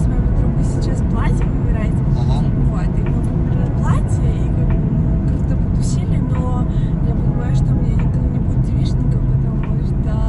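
Steady low road and engine rumble heard from inside the cabin of a moving car, under a woman's talking.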